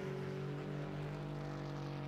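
Lamborghini Huracán GT3 race car's V10 engine running at a steady, constant pitch, with no gear changes.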